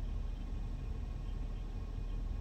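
A pause with only a steady low hum of background noise inside a car cabin.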